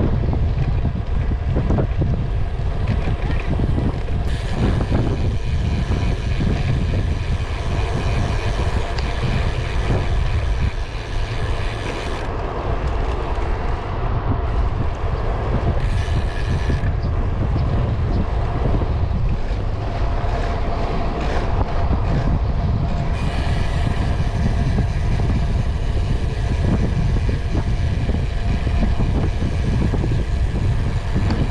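Steady wind rush on the microphone of a handlebar-mounted camera on a moving road bike, a constant low rumble mixed with road noise.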